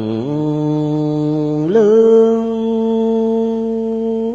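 A man chanting Buddhist verses in a slow, drawn-out sung recitation. He holds a long low note, then steps up in pitch on the word 'lương' about halfway through and sustains the higher note steadily.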